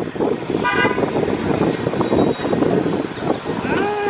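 Steady noise of street traffic with a short vehicle horn toot just under a second in.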